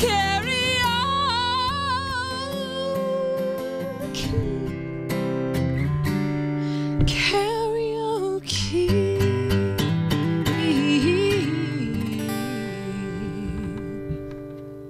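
A woman singing long, drawn-out notes with a wide vibrato over a strummed acoustic guitar, the song dying away near the end.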